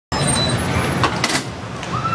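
Fairground din: a steady mix of crowd voices and ride machinery, with a few short clatters about a second in.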